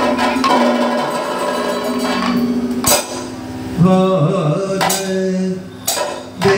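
Kathakali music: a male singer's wavering sung line over steady ringing metal tones, with sharp percussion strikes of the gong, cymbals and drums (chengila, ilathalam, chenda, maddalam) about three seconds, five seconds and six seconds in.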